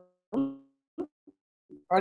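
A run of short pitched musical notes, each dying away quickly, with gaps between them. The notes grow fainter and shorter toward the end.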